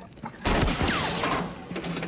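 Film battle sound effects: a sudden loud blast with gunfire about half a second in, dying down over the next second.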